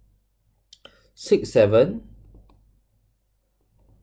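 Two light clicks of a stylus tapping on a tablet screen while digits are written, followed by a short spoken phrase.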